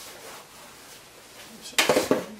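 Quiet workshop room tone, then near the end a short sharp clatter of a steel turning tool being picked up and handled: the roughing gouge.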